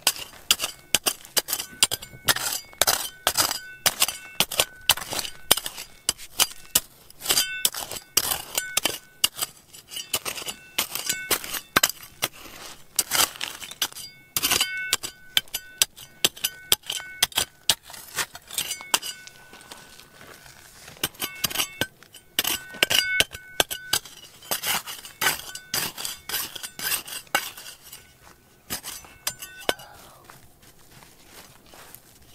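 A small metal hand trowel digging into stony gravel, its blade repeatedly scraping and striking rocks in quick irregular bursts with short pauses. Many strikes leave the blade ringing with a brief high tone.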